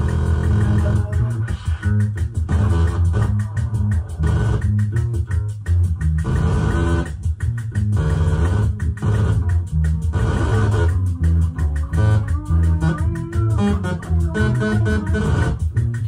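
Live improvised electronic music played on synthesizers and keyboards, a heavy bass line moving in steps under higher notes, broken by frequent short gaps.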